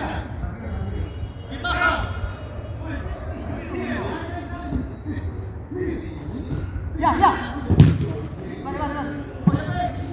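Footballers shouting and calling to each other during play, with one sharp thud of a football being struck about eight seconds in.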